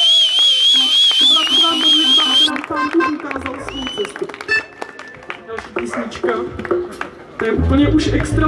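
Band on stage between songs: a high, wavering tone for the first two and a half seconds, then talk and scattered short instrument sounds.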